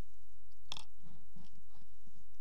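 Handling noises from a small plastic cosmetic compact: a short sharp click or rattle a little under a second in, then faint scratchy taps. A steady low electrical hum sits underneath.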